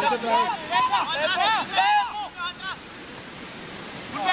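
Voices shouting in short rising-and-falling calls for the first two and a half seconds or so, then a steady rushing hiss of wind on the microphone.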